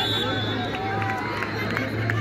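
Players and spectators shouting and calling out during a kho kho raid, several voices overlapping, over a steady low hum. A high steady tone sounds briefly at the start.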